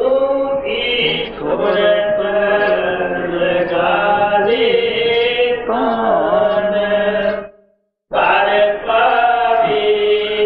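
A solo voice chanting a devotional hymn in long, drawn-out notes, breaking off for about half a second near the end and then carrying on.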